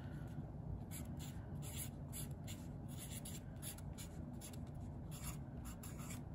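A Sharpie felt-tip marker writing on a paper index card: a faint run of short, scratchy pen strokes as a word is written out.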